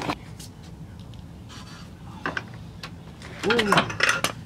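Scattered metallic clicks from a socket ratchet working a trailing arm bolt, then near the end a short strained vocal sound that rises and falls in pitch.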